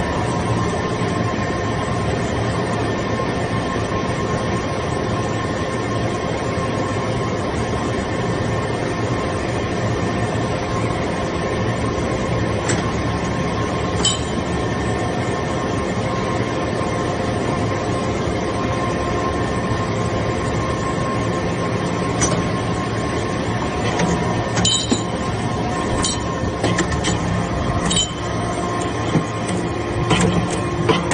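Hydraulic metal-chip briquetting press running: a loud, steady hum and whine from its hydraulic pump unit, with a few sharp metallic clinks in the second half.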